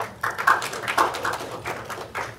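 Audience applauding, many individual claps overlapping.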